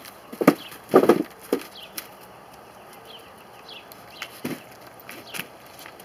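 Dogs moving about, making a handful of sharp slaps and knocks. The loudest is a short cluster about a second in, and a few single ones come later.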